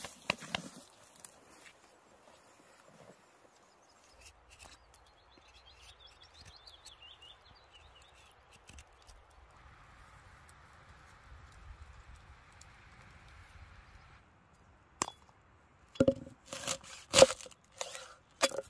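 A brief rustle of brush at the start, then a long quiet stretch of faint outdoor background. Near the end, a cleaver chops garlic on a wooden cutting board in a quick run of sharp knocks, the loudest sound here.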